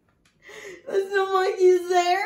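A woman's playful mock whimper without words: a short breathy sound, then a long drawn-out whining note from about a second in.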